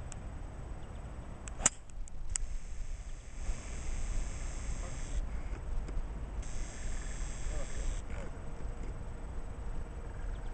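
Golf club striking the ball on a fairway shot: one sharp click about a second and a half in, over a steady low rumble.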